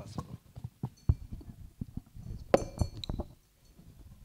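Handling noise from a handheld microphone being carried and set up at a lectern: scattered knocks and bumps, the loudest about two and a half seconds in, with a brief high clink ringing after it.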